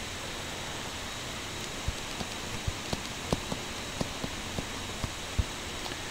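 Steady background hiss with faint, irregular light ticks of a stylus tapping on a tablet screen while handwriting, about a dozen spread through the second half.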